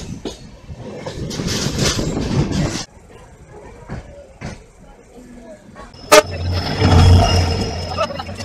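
Running noise of a moving train heard from its open door, cut off suddenly about three seconds in. A quieter stretch follows, then a sharp clank about six seconds in and the loud drone of another train passing close on the next track.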